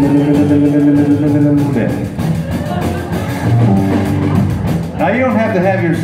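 Live rock-and-roll band with upright bass and drums playing, with a note held for the first second and a half. Near the end the singer's wordless voice slides up and down over the band.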